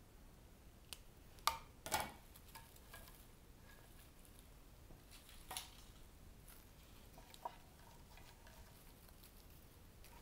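Quiet handling of cut greenery: a few sharp clicks of floral snips cutting stems and branches being set into an arrangement, the two loudest about a second and a half and two seconds in, over low room tone.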